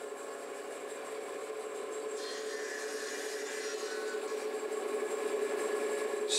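Woodworking machinery running steadily: several held tones over a hiss that turns brighter about two seconds in, slowly getting louder.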